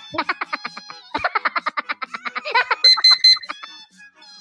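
An online countdown timer's alarm going off as it reaches zero: a fast run of electronic beeps, then a few louder, higher-pitched beeps near the end.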